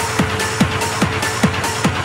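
Hard techno playing in a DJ mix: a pounding four-on-the-floor kick drum at about two and a half beats a second, with hi-hats hissing between the kicks.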